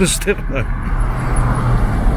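Traffic noise: a car engine running steadily under tyre and road noise as the vehicle drives along a city street.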